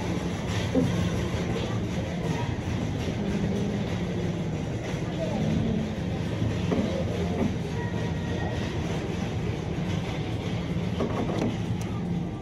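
Busy supermarket background: a steady low rumbling hum with indistinct voices of other people mixed in.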